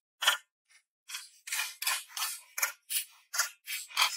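Small hand mattock chopping into dry, stony soil, its metal blade striking and scraping through gravel with a crunch on each stroke. One stroke, a short pause, then quick strokes about three a second from about a second in.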